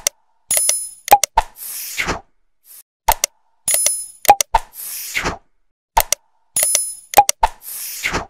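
Animated subscribe-button sound effects: short ringing dings and sharp clicks, a pop, then a falling whoosh, the cycle repeating about every three seconds.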